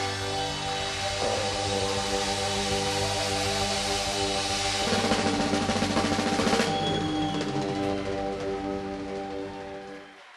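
Live band with keyboards and drums holding a sustained chord while the drums and cymbals swell, then stop sharply about two-thirds of the way through, leaving the chord to ring down.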